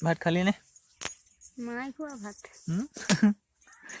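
A woman's voice speaking in short phrases, breaking into a laugh at the end, with a few sharp clicks in between.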